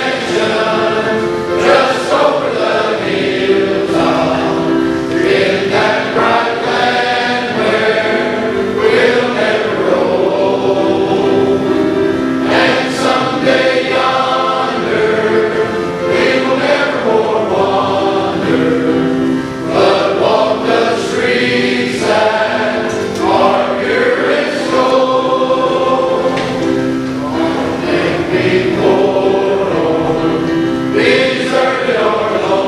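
A choir of men and boys singing together, one continuous song with sustained, held notes.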